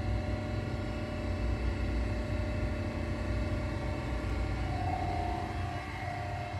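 Refrigeration rack compressors running steadily under full load, a constant low hum laced with steady tones, just as the liquid line is closed for a pump down. A faint steady whine grows stronger near the end.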